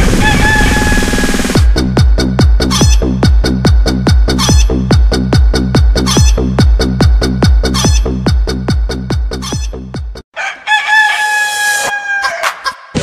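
Chopped-up, looped audio: a long held pitched call, then a short sound stuttered about four times a second over a heavy bass pulse, then the same held call again near the end.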